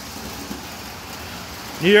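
O-scale three-rail model trains running on the layout: a steady, even rolling noise of metal wheels on the track.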